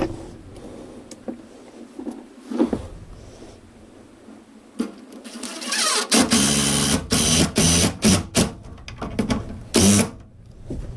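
Cordless driver running in several short bursts, driving screws through the attic ladder's frame into the framing, starting about six seconds in; the first burst rises in pitch as the motor spins up. Before that there are a few light knocks of handling.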